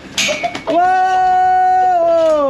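A chicken's wings flap briefly as it jumps off the goat, then a person lets out one long, held cry that stays on a single steady pitch for over a second.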